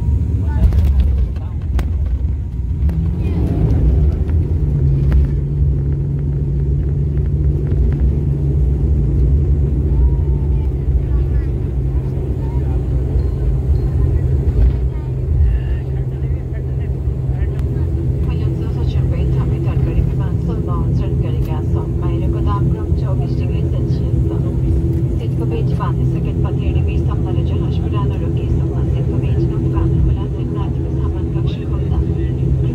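Cabin noise of an ATR turboprop airliner rolling on the ground: a heavy low rumble at first, settling after a few seconds into a steady engine and propeller drone. A second, higher steady hum joins about halfway through.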